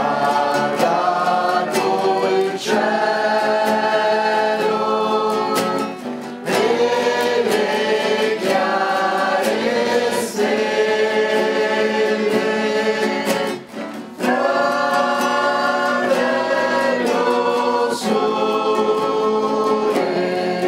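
A small group singing a pastorella, a traditional Italian Christmas song, together to acoustic guitar strumming, with short breaks between sung phrases.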